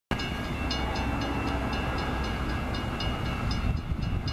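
Railroad grade crossing bell ringing in quick, even strokes, about four a second, over a low steady rumble from the train.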